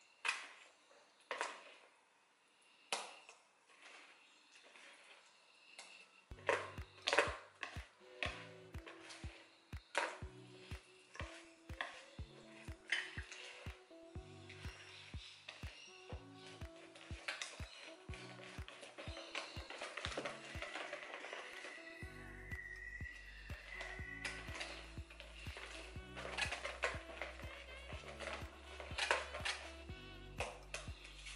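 Wire whisk clicking and knocking against the sides of a bowl as a thick batter of eggs and oil is beaten by hand. Background music with a steady beat comes in about six seconds in and plays under the whisking.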